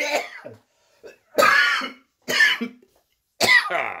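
A man in a fit of coughing: about four coughs, roughly a second apart.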